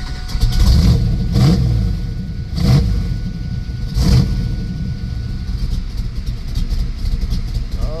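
The 1996 Camaro Z28's 5.7-litre LT1 V8 running rough at idle, surging four times in the first half and then settling, as it struggles not to stall at a stop.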